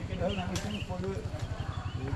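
People talking in the background over a low, rapid, steady throbbing.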